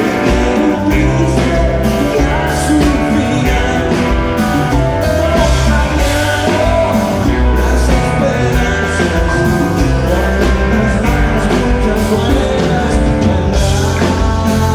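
Live rock band playing: drum kit, bass and guitars, with a man singing.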